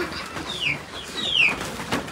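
A bird chirping: a few short high calls, each falling in pitch.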